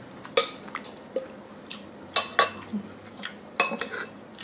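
Metal spoon clinking against ceramic bowls while scooping from a soup bowl into a rice bowl: a few sharp ringing clinks, one near the start, a quick pair just after two seconds and another near the end.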